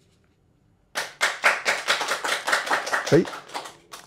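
A small group applauding, a quick, dense patter of hand claps that starts about a second in and lasts nearly three seconds.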